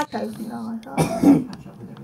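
A person coughs, a sudden harsh burst about a second in, with low voice sounds just before it.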